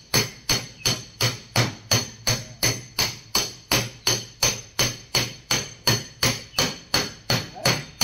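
A flat metal body tool tapping a car's sheet-metal body panel in a steady rhythm, about three taps a second, each with a short metallic ring: panel beating to work out a dent.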